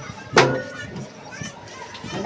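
A plastic bottle lands with one sharp knock on a metal tabletop about half a second in, amid people talking and laughing.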